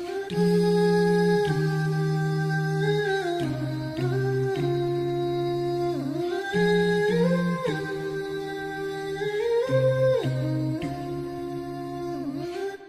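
Background nasheed of wordless hummed vocal harmony: layered voices holding long notes and stepping slowly from one note to the next, with no instruments or beat.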